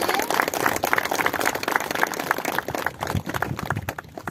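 Audience applauding, a dense patter of claps that thins out and fades near the end.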